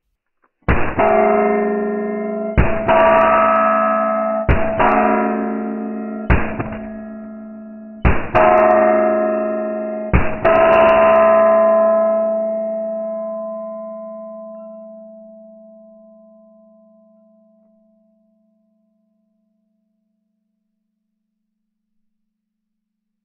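Six pistol shots from a Smith & Wesson M&P 2.0 Metal, slowed down by slow-motion playback so each shot becomes a deep thud with a long, low ringing tone, about two seconds apart. After the sixth the ringing fades away slowly over several seconds.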